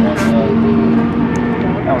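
A steady engine drone, with short bits of voices over it.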